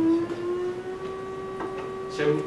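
Electronic tone from a Pure Data oscillator patch that slides up in pitch during the first second as its frequency value is raised, then holds steady.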